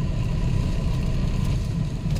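Steady low rumble of a car's engine and road noise, heard from inside the moving car.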